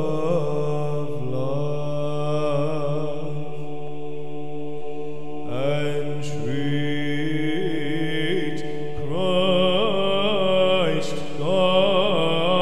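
Byzantine chant sung in English: an ornamented melody line over a steady low ison drone, with a new phrase starting about halfway through and another near the end.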